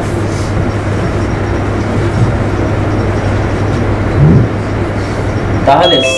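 Steady rushing background noise with a constant low hum underneath, and a brief faint low sound about four seconds in.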